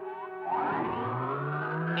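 Cartoon sci-fi sound effect of an electro-magnetizer machine being switched on and powering up: a whine that starts about half a second in and climbs steadily in pitch.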